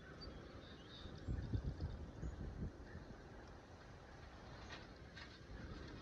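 Wind gusting over the microphone, a low rumble that swells about a second in and dies back by the third second. A few faint clicks come near the end.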